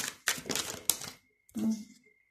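Tarot cards being drawn and handled on a table: a quick run of sharp clicks and taps in the first second. A brief hum of the voice follows near the end.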